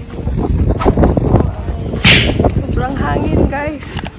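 Wind buffeting the phone's microphone in a steady low rumble. A short hissy swoosh comes about halfway through, and brief voices follow near the end.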